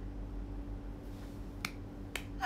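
One short, sharp click about one and a half seconds in, over a steady faint hum.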